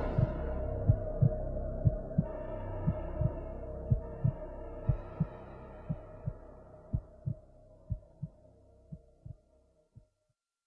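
Soundtrack heartbeat effect: paired low thumps, about one pair a second, over a sustained droning hum. The whole fades out slowly and stops just before the end.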